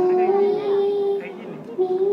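A young girl singing a Malayalam devotional song into a microphone, holding one long note for about a second, then starting a new phrase near the end.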